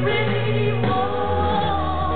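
Live band music with a female singer holding a long, wavering note over the band's low bass line, which steps to a new note about a second in. Heard from the audience, the sound is muffled with no top end.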